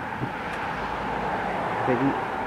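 Steady noise of a passing vehicle, building gradually in loudness.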